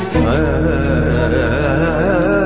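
Background music from a TV serial's score. Just after the start, a dramatic theme gives way to a devotional, chant-like cue: a wavering melody over a steady low drone.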